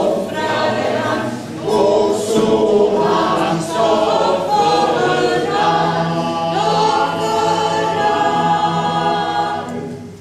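Mixed choir singing a cappella, the closing phrase ending in a long held chord that is cut off just before the end.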